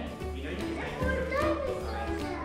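Background music with sustained bass notes, over indistinct voices, a child's among them.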